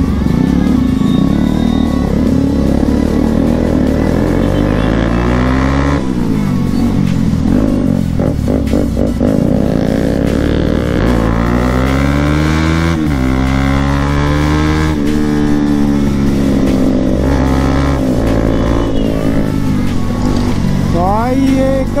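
Bajaj Pulsar NS200's single-cylinder engine revving up and dropping back several times as the bike accelerates and shifts through traffic.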